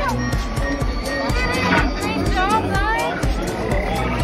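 Astromech droid beeps and whistles, R2-D2 style, as a newly built R2-series droid is activated: clusters of quick rising and falling chirps, over background music.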